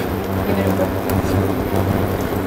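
Steady low electrical hum from a portable induction cooktop running under a pan of sauce, with a faint hiss of the sauce cooking.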